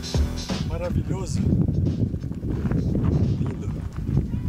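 Background music cuts off about half a second in. Wind buffeting an outdoor microphone follows, with a few brief voice sounds around a second in.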